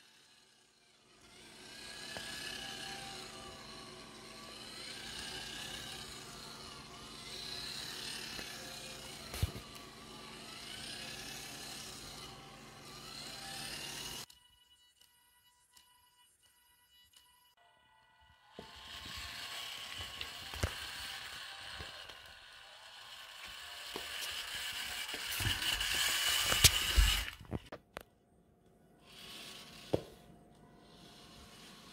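Small geared DC motors of a two-wheeled self-balancing robot whining, the pitch rising and falling every couple of seconds as the wheels speed up and reverse to keep it upright. It stops for a few seconds, then returns louder, with sharp clicks and knocks near the end.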